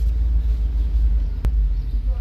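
Steady low rumble of a car heard from inside the cabin, with one sharp click about one and a half seconds in.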